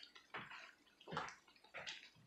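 Onion bhaji fritters shallow-frying in hot oil in a pan: quiet bubbling with irregular soft pops, a few of them louder.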